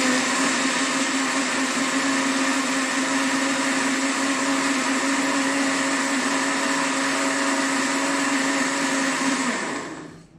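Countertop blender running steadily at one speed, blending cashew milk and a banana into a smooth drink: a steady motor hum over liquid churning. It is switched off near the end and winds down.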